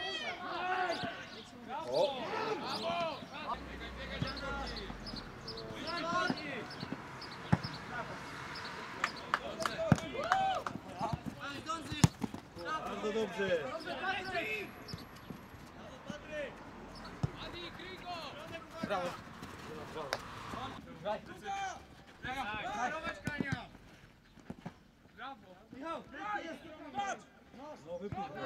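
Football players and coaches shouting across an open pitch during play, with sharp thuds of the ball being kicked, the loudest about ten and twelve seconds in.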